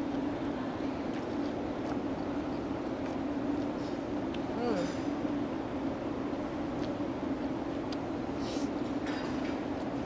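A person eating noodles with chopsticks over a steady low background hum: a few light clicks of metal chopsticks on a steel bowl and several short slurps of noodles. A brief voice-like sound, such as a hum of approval, comes about halfway through.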